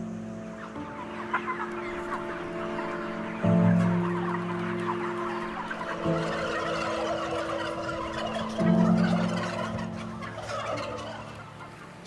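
A crowded shed of broiler chickens and turkeys, a dense chatter of many birds clucking and calling at once. Underneath is slow music of long held notes, with the chord changing every two to three seconds.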